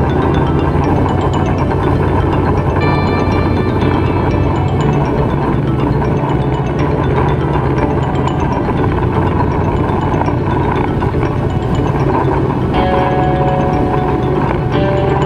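Background music with marimba-like mallet percussion.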